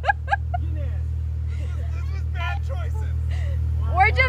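Jeep engine idling steadily, a low even hum, with faint voices talking in the background.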